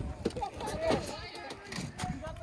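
Faint talking from people some way off, over a low rumble.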